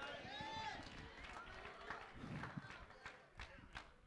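Faint room tone in a pause between loud speech, with a brief, distant voice in the first second and a few light clicks.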